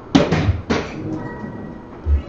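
Sharp knocks in the first second as a soft-tip dart strikes an electronic dartboard and the machine answers with its hit sound.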